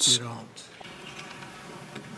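The end of a man's spoken word at the start, then a pause in his speech with only faint steady room tone and a slight hum from the microphone feed.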